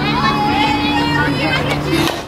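Girls' voices calling out and cheering from the field and dugout during a softball at-bat, over a steady low drone that stops right at the end.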